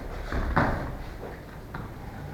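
Bare feet thudding onto foam floor mats as children land jumping kicks. The loudest thud comes about half a second in, followed by a couple of lighter ones.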